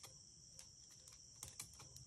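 Faint steady chirring of night insects, crickets, with a few light scattered clicks, most of them about a second and a half in.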